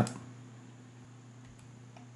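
Quiet room tone with a steady low electrical hum and a single faint mouse click about a second and a half in, as the part is opened in the CAD program.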